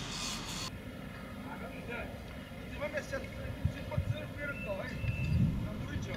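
Steady low rumble of distant motorway traffic, with faint far-off voices now and then.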